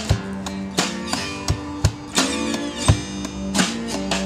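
Live acoustic band playing an instrumental passage: acoustic guitars strumming over a steady beat of low thumps, about three a second.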